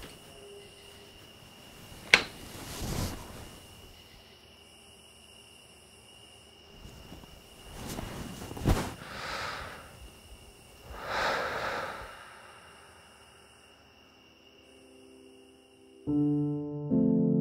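Slow breathing: three long, soft breaths a few seconds apart, with two sharp clicks, one near the start and one in the middle, over a faint steady high-pitched whine.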